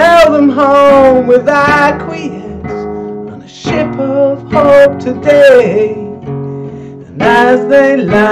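A man singing while strumming a nylon-string classical guitar. The voice comes in phrases, with short gaps about three seconds in and about seven seconds in where only the guitar carries on.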